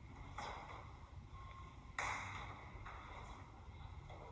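Faint sound of two people grappling on foam gym mats: a low steady room hum with a soft scuff early on and a sharper noisy burst about two seconds in that fades in under a second.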